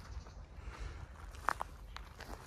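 Footsteps on dry leaf litter and twigs, with two sharp crackles about one and a half seconds in.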